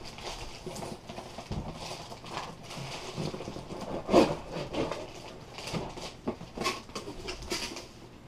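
Plastic bag crinkling and cardboard rubbing as a car battery in its bag is lifted out of its box and handled: irregular rustles throughout, with a louder knock about four seconds in.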